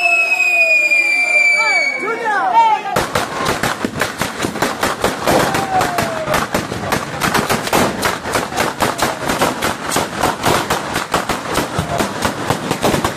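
A whistling firework sounds one long whistle that slowly falls in pitch. About three seconds in, a dense, rapid crackle of firecrackers from a bolognese-style ground battery starts suddenly and keeps going.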